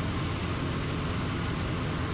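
Super Decathlon's four-cylinder Lycoming engine and propeller droning steadily in cruise, heard inside the cockpit with a constant rush of wind noise.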